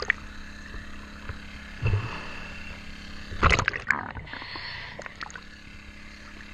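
Underwater: a diver's exhaled air bubbles rushing past the microphone in two gurgling bursts, about two seconds in and again at about three and a half seconds, over a steady low hum.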